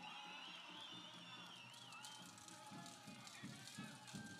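Near silence in a pause of an outdoor speech: faint distant voices, with a faint wavering high tone in the first two seconds.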